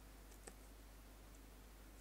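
Near silence with a few faint computer keyboard keystrokes, the clearest about half a second in.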